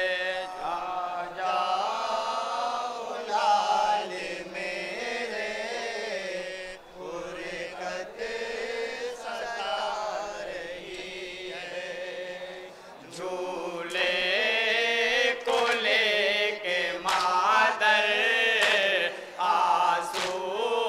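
A group of men chanting a noha (Urdu lament) together, one young voice leading into microphones with the others answering. From about two-thirds of the way in, a series of sharp hand slaps joins the chanting: matam, the mourners' rhythmic beating of their chests.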